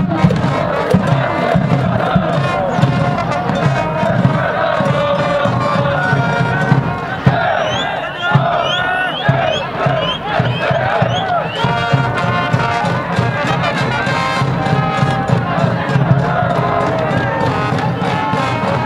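Japanese high-school baseball cheering section: a brass band plays a cheer tune while a crowd of students chants and shouts along, loud and unbroken.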